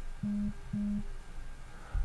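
Two short, low electronic beeps in quick succession, each a steady tone about a third of a second long.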